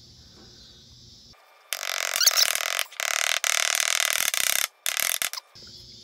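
A new trailer-hub oil seal rubbing and scraping against the hub as it is worked into place by hand. A harsh rasping starts about a second and a half in and runs for about four seconds, broken by a few short gaps.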